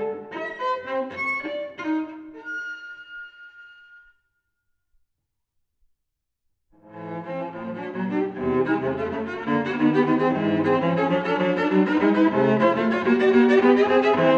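Solo cello in a contemporary piece: short, detached bowed notes, the last ones left to ring and die away, then about two and a half seconds of silence. Just before seven seconds in, a fast, dense bowed passage starts and grows louder.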